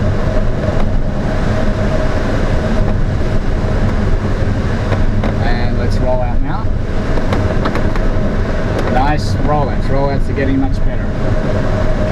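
Steady rush of airflow in the cockpit of an ASK 21 glider in flight, with a thin steady tone underneath. Voices talk briefly around the middle and again near the end.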